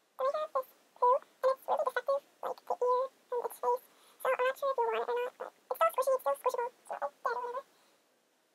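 A young person talking in a very high-pitched voice, in short phrases with brief pauses.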